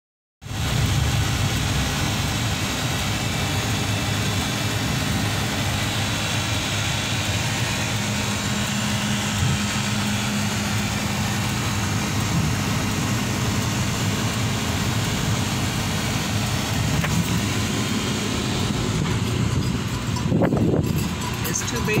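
Steady low engine and road noise heard inside a car's cabin as it creeps along slowly, with a voice starting near the end.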